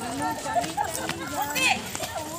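A group of women's voices talking and calling over one another, with a few light taps.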